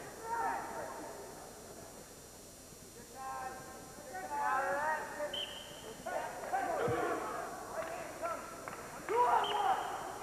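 Voices shouting during a college wrestling bout, in scattered calls rather than steady talk, with a short high squeak a little past halfway.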